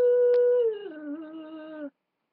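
A woman's long, loud wailing cry held on one pitch, dropping to a lower, quieter held note about two-thirds of a second in and cutting off just before the end.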